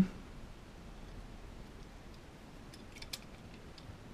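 A few faint, small clicks and ticks, mostly about three seconds in, as a small screwdriver's tip works against the plastic case and circuit board of an electroluminescent wire controller, over quiet room tone.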